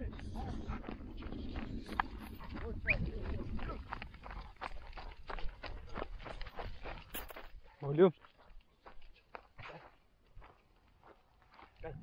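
Footsteps and paws crunching irregularly on dry, stony dirt as a man and dogs walk and trot across a field, over a low rumble that fades after about four seconds. The steps grow sparse and faint after about eight seconds.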